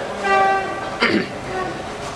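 A paper straw making machine's warning buzzer sounds one steady, even-pitched tone for just under a second, as the machine is started from its control panel.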